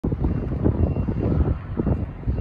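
Wind buffeting the microphone: a loud, uneven low rumble that rises and falls in gusts.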